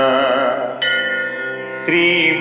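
Carnatic-style devotional singing: a voice holds the end of a line with a wavering, gliding pitch. About a second in, a bright instrumental note strikes and rings on steadily, fading, before a new note starts near the end.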